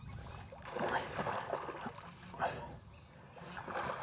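Hooked smallmouth bass splashing at the water's surface beside the boat during the fight, in a few short bursts.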